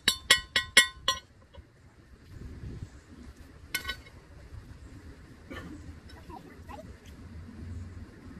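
Hand hammer striking a glowing steel knife blank on a steel anvil, about four ringing blows a second, stopping about a second in. A single sharp metal clink follows a few seconds later as the tongs are laid on the anvil.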